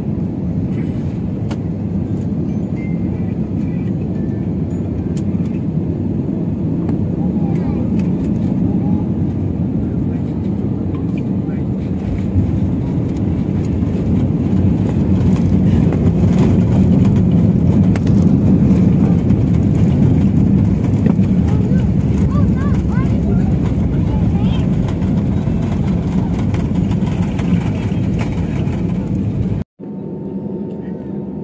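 Airliner cabin noise during landing: a steady engine and airflow rumble, with a short bump about twelve seconds in as the wheels touch down. The rumble then grows louder for several seconds on the runway rollout before easing off.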